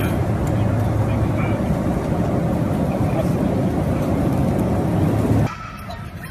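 Loud, steady low rumble of a moving vehicle, cutting off suddenly about five and a half seconds in.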